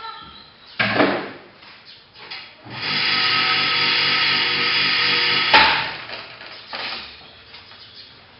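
A sharp click about a second in. Then an electric target carrier's motor runs steadily for about three seconds, bringing the target back up the range, and stops with a clack.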